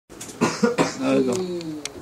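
A person coughing three times in quick succession, then one long drawn-out vocal sound that slowly falls in pitch.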